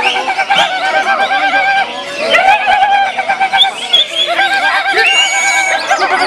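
Greater green leafbird (cucak hijau) singing: three long phrases of fast, wavering trilled notes, with short higher chirps and glides between them.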